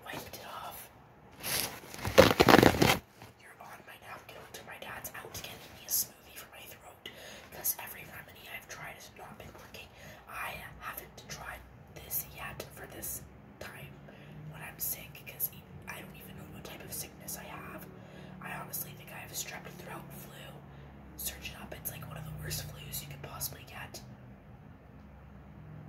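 A woman whispering softly, with a loud rush of noise lasting about a second, about two seconds in, and scattered short clicks.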